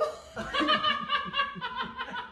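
Laughter: a quick, even run of short laughs starting about half a second in.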